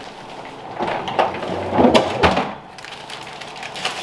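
A refrigerator's bottom freezer drawer being pulled open, with a few knocks and clicks about one to two seconds in as a parchment-wrapped roll of dough is set inside among the frozen contents.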